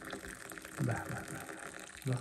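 Liquid being poured in a steady stream, with a short voice about a second in.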